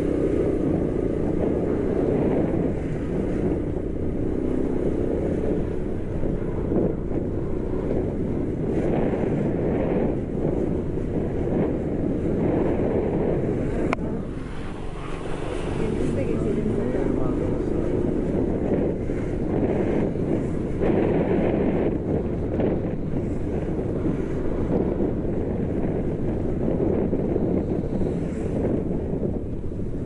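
Wind rushing over the microphone of a camera on a moving motorbike, with the bike's engine and road noise underneath. The rush is steady and dips briefly about halfway through.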